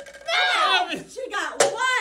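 Excited exclamations from the players, with one sharp smack about one and a half seconds in as a plastic party cup hits the tabletop.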